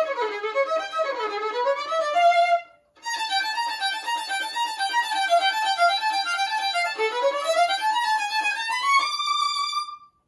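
Solo violin played unaccompanied in quick runs of notes, with a short break about three seconds in. A rising scale follows, and the phrase ends on a held high note.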